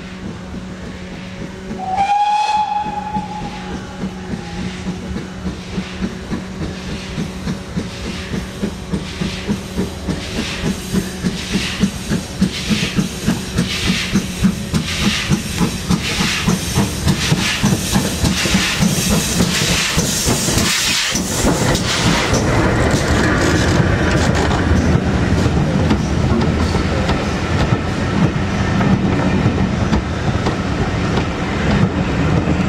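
GWR Castle Class steam locomotive sounding a short whistle of about two seconds, then chuffing in evenly spaced exhaust beats that grow louder as it approaches. It passes near the end, and the rumble and clickety-clack of its coaches follows.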